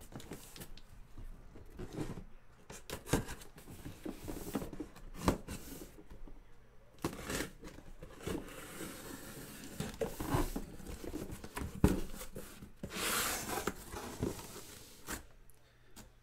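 A cardboard shipping case sealed with tamper-evident packing tape being opened by hand: tape tearing and cardboard flaps scraping and rustling in irregular clicks and scrapes, with a longer tearing sound near the end.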